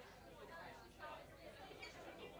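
Faint, indistinct chatter of people talking.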